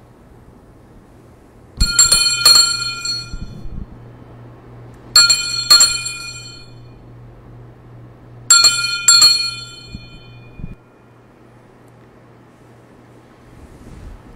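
Altar bells rung three times at the elevation of the chalice just after the consecration. Each ring is a quick shake of a few bright, ringing strikes, about three seconds apart, over a low steady hum that stops near the end.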